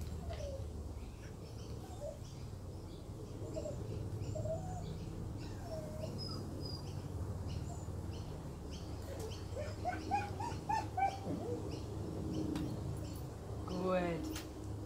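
Birds calling: scattered short high chirps and brief cooing notes about once a second, with a run of notes rising then falling in pitch about ten seconds in.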